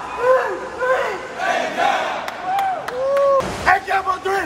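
A swim team shouting a cheer together: a crowd of young voices yelling short calls in a steady rhythm, about two a second, with one longer drawn-out shout about three seconds in.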